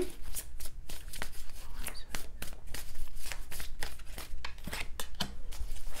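A deck of tarot cards being shuffled by hand: a quick, uneven run of small card clicks.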